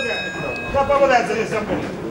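A high ringing signal tone from the ring, fading out within the first half second, which marks the end of the boxing round. After it come voices calling out in the hall.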